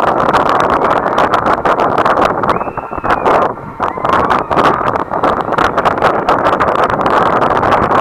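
Wind rushing and buffeting over the microphone of a camera mounted on a swinging, spinning thrill ride in full motion, a loud steady rush broken by rapid crackling gusts.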